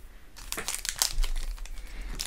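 Foil wrapper of a Pokémon trading card booster pack crinkling as it is picked up and handled in the hands, a fast run of crackles starting about half a second in.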